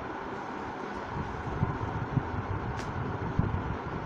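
Steady low background rumble, with a few faint knocks and a short click about three seconds in.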